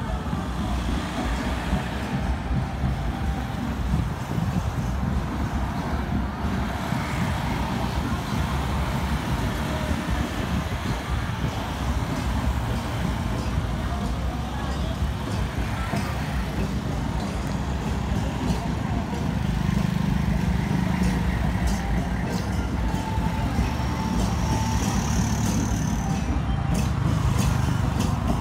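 Street traffic noise with a steady low rumble, under the murmur of people's voices. In the last third a run of sharp clicks joins in.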